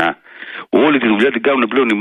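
Speech only: a man talking over a narrow-sounding telephone line on a radio broadcast, with a short pause about half a second in.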